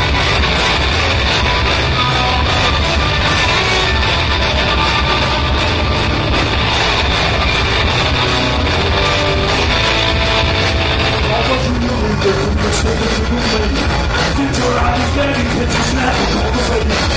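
A live rock band playing loud: distorted electric guitars and a drum kit with steady, rapid cymbal hits, and a voice singing in the second half.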